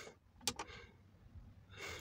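A quiet pause holding one short click about half a second in, then a man's short intake of breath near the end.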